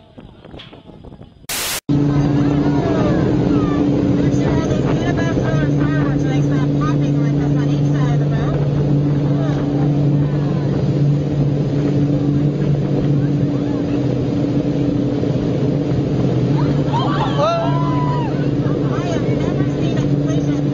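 After a short burst of noise about two seconds in, a motorboat engine drones steadily at speed over the rush of water and wind from the wake. Voices come through now and then, most clearly near the end.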